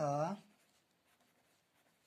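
A pen writing on lined notebook paper: faint scratching strokes as words are written.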